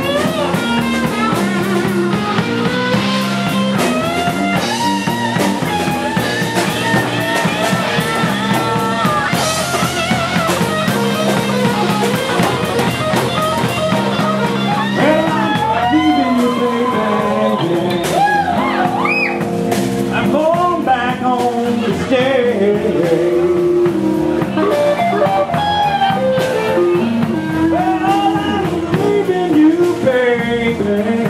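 Live rock band playing: electric guitar lead with bending notes over drums, bass and acoustic guitar.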